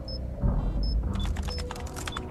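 Film soundtrack with background music under computer keyboard typing, and three short high electronic beeps from the terminal about 0.7 s apart.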